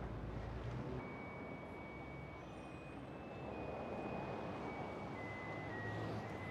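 Outdoor street noise with a low vehicle rumble that drops away after about a second. A series of held high tones follows, stepping up and down in pitch.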